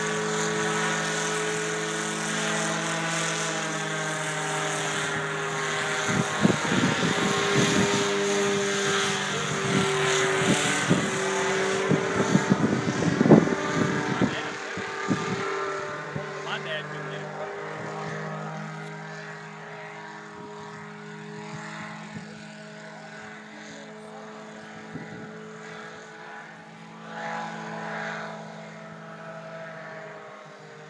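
Powered parachute's engine and propeller humming overhead with a steady drone that grows fainter over the second half as the craft flies away. A run of irregular rustling bursts comes in the middle.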